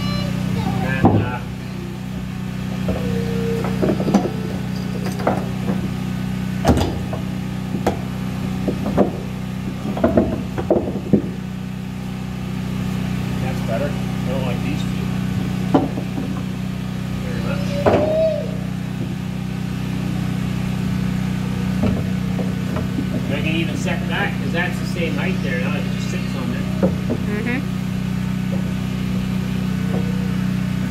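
Flat fieldstones being shifted and set down on a plywood subfloor: scattered knocks and scrapes, thickest in the first twelve seconds, over a steady low machine hum.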